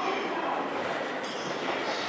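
E531-series electric train approaching slowly through the pointwork, with a steady running noise of its wheels on the rails.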